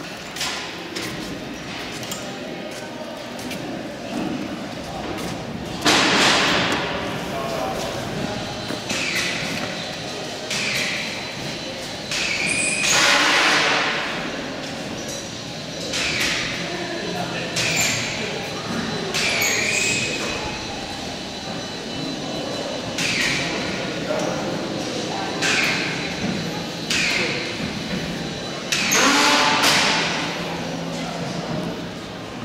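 Indistinct voices echoing in a large indoor hall, with about a dozen short, loud bursts scattered through, some high-pitched.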